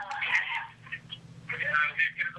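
Recorded voicemail speech played back through a phone's loudspeaker, with a steady low hum underneath.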